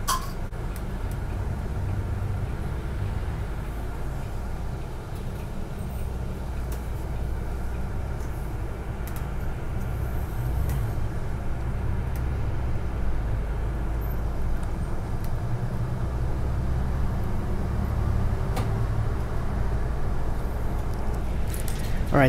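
Transperth city bus 3306 heard from the front seat inside the cabin: engine and road noise make a steady low drone. The drone grows a little louder over the second half as the bus gets under way along the road.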